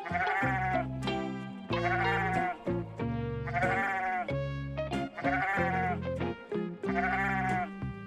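Sheep bleating five times, one wavering bleat about every second and a half to two seconds, over soft background music.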